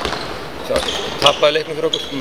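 A ball bouncing on a hard hall floor in the background under talking, with a couple of sharp thuds in the second half.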